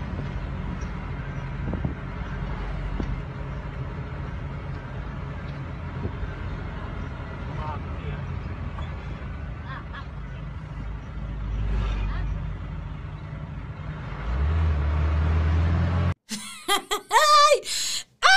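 Road noise of moving traffic recorded on a phone: a steady low rumble of engines and tyres, with a deeper steady hum coming in near the end.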